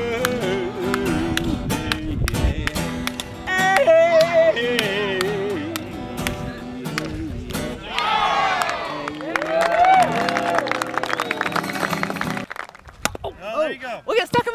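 A man singing to a strummed acoustic guitar. About eight seconds in, several voices shout and cheer over the song, and the music cuts off near the end.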